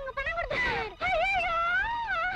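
A high-pitched human wail: a short cry about half a second in, then a long drawn-out wailing voice with a wavering pitch.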